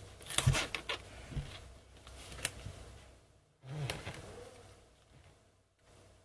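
Hands handling washi tape and planner paper: rustles and light taps as a tape strip is laid and pressed onto the page, with a sharp click about two and a half seconds in and another short burst of rustling just before four seconds.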